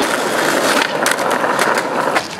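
Skateboard wheels rolling on an asphalt road: a steady rolling rumble, with a run of sharp clicks from about a second in.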